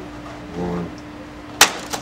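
A raw egg dropped from two meters strikes a small handmade blue paper egg-catcher with one sharp knock about a second and a half in, followed by a lighter tap just after, as the egg bounces out and breaks.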